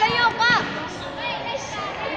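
Two short, loud, high-pitched yells from girls or women courtside, the first at the very start and the second about half a second in. Fainter calls and chatter follow over the hall's background noise.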